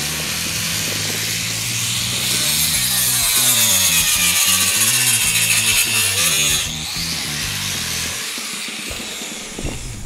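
Angle grinder with a cut-off wheel cutting through steel lath, a loud high-pitched grinding whose pitch wavers as it bites, stopping about seven seconds in.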